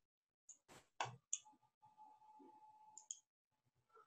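Near silence broken by four or five faint, short computer mouse clicks, with a faint steady tone lasting about a second and a half in the middle.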